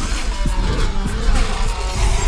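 Action-film soundtrack: driving music mixed with car-chase sound effects, with car engines and tyre squeal, and several sharp impact hits.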